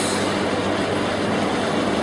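Steady, even rushing background noise with a faint low hum underneath.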